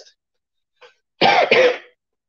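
A man clears his throat with a short double cough about a second in.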